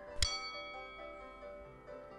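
Soft background music with a single bright bell-like ding about a quarter second in, ringing on as it fades: the notification-bell chime of a subscribe-button animation.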